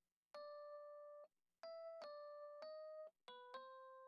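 Faint single keyboard notes from the Keyscape instrument plugin, sounded one at a time as notes are drawn into a piano roll: about six short notes at close pitches, each held briefly and cut off.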